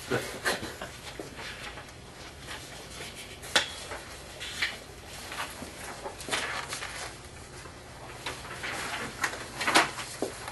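Small scattered knocks, taps and rustles of people handling papers and pens at a meeting table, over a steady low electrical hum; the loudest knock comes near the end.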